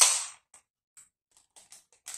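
A 500 ml beer can being opened: a loud hiss of escaping gas that dies away within about half a second, followed by a few faint clicks and taps of the can and glass on the counter.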